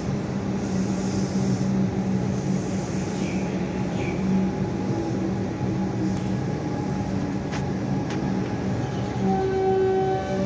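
Electric suburban train at a station platform giving a steady, loud hum. A whine from its electric drive sets in about nine seconds in.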